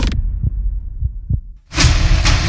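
Intro soundtrack: loud music cuts off just after the start, leaving a low bass rumble with three or four deep thumps like a heartbeat. After a brief dip to near silence, loud full-range music and effects start again near the end.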